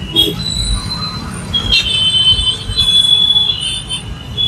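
Slow, jammed street traffic: engine rumble from cars and buses, with long, high-pitched squeals of vehicle brakes coming and going as the traffic creeps forward.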